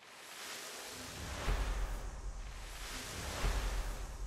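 A sound-design transition: a soft, airy whooshing hiss with deep bass swells about one and a half seconds in and again near the end.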